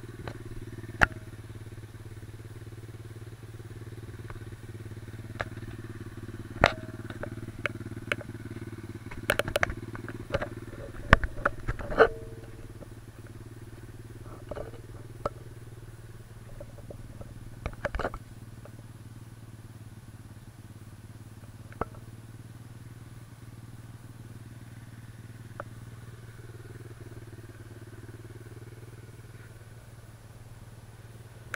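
A small dirt bike's engine idling steadily, with a string of sharp clicks and knocks bunched around the middle.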